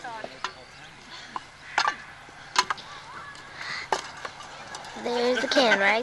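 Wooden sticks knocking against a can and against each other in a stick-and-can field game: a handful of sharp, scattered knocks, the loudest about two and a half seconds in. Voices and laughter come in near the end.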